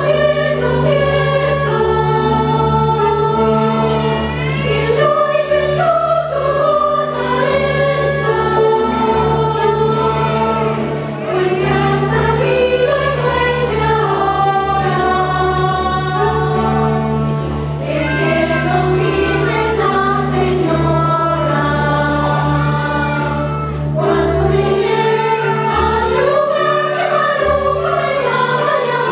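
A mixed stage chorus singing a zarzuela number in held, wavering notes with orchestral accompaniment, as heard in a live theatre performance.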